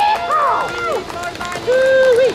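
Speech: a voice through a public-address system, in short phrases with a brief pause between them.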